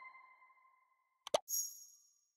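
Outro button-animation sound effects: a bell-like tone fading away, then a quick double click a little past halfway, followed by a short high, sparkling chime near the end.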